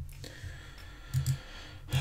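A few short clicks at a computer, one at the start and more about a second in and near the end.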